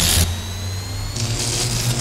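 Sound design for an animated logo reveal: a low steady drone under a faint rising high whine, with a hissy shimmer swelling back in about a second in.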